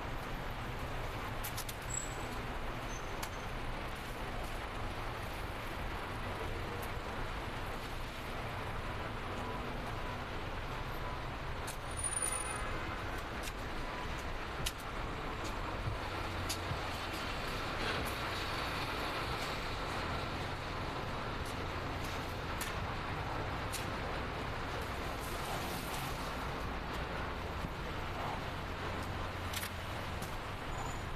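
A queue of cars idling and creeping along inside a concrete parking garage: a steady low engine hum with road noise, and a few light clicks.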